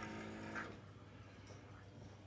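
Quiet indoor room tone with a faint, steady low hum. A brief faint sound comes just over half a second in.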